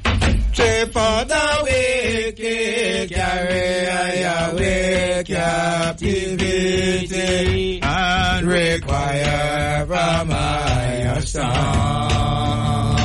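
Music with a chanted, sung vocal over a steady backing.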